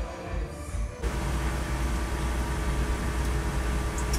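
Steady engine and road rumble inside a moving motorhome, cutting in suddenly about a second in, with music playing along.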